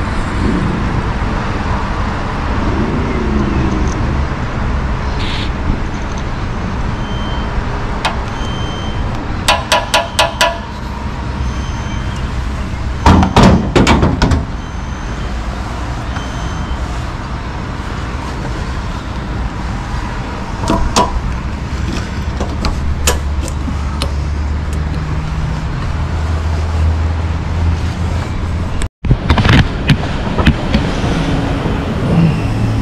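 Road traffic and vehicles running nearby as a steady rumble, with several clusters of sharp clicks and knocks; the loudest clatter comes about halfway through.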